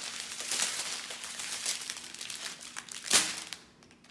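Small plastic bags of square diamond-painting drills crinkling as they are handled and set down on the canvas, with one louder sharp click about three seconds in.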